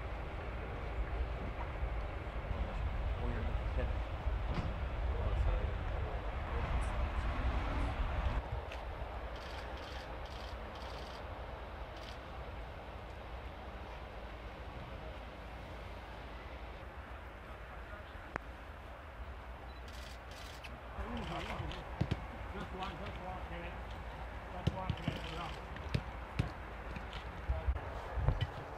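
Football training ground: indistinct voices of players and staff with a low rumble for the first eight seconds or so. In the last several seconds come scattered sharp thuds of footballs being kicked and a short laugh.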